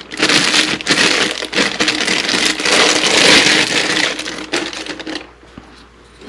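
Clear plastic bag crinkling and rustling as a riflescope is worked out of it by hand, dying away about five seconds in.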